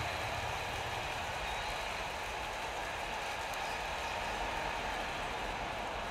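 Steady stadium crowd ambience from the football-themed video slot's soundtrack: an even, unbroken crowd noise.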